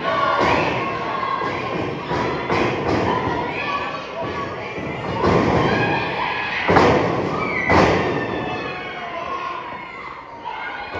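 Several heavy thuds of wrestlers' bodies hitting the wrestling ring mat, the loudest ones in the second half, over a crowd of spectators talking and shouting, children among them.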